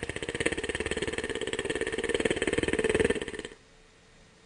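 A cartoon snoring sound effect: one long, fast rattling snore that cuts off abruptly about three and a half seconds in.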